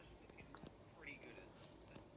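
Near silence with faint whispered speech.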